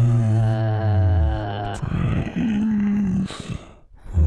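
A deep, drawn-out groaning voice, then a shorter, higher groan a little past the middle, the kind of groan given to a zombie or monster.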